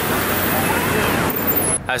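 Steady city street noise: traffic with a hubbub of passers-by's voices. It cuts off abruptly near the end, where a nearby voice begins speaking.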